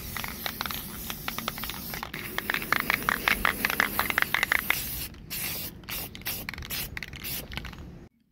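Aerosol spray paint can hissing in several bursts with short gaps between them, a run of quick ticks in the middle.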